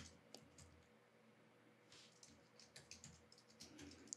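Very faint computer keyboard typing: scattered soft key clicks over near silence, more of them in the second half.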